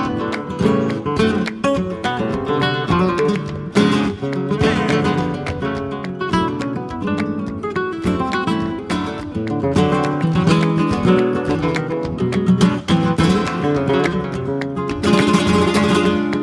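Flamenco-style music led by strummed acoustic guitar, with no singing.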